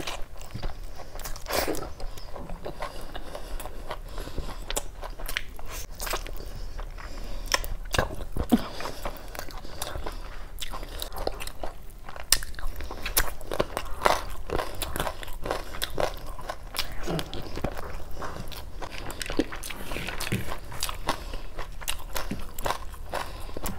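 Close-miked eating by hand: a person biting into a curried chicken leg and chewing mouthfuls of curry and rice. It is a continuous run of wet chewing and smacking with irregular sharp clicks.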